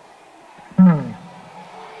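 A single electric guitar note, struck about a second in and sliding down in pitch over about half a second before fading.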